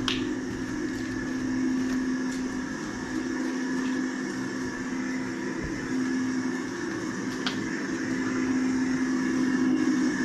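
Steady electrical hum of powered plant equipment, a sign that the building still has power, with a few faint clicks from footsteps.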